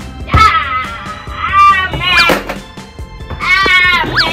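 Three loud, cat-like meowing cries that bend up and down in pitch: a long one near the start, a short sharp one about halfway, and another near the end, over steady background music.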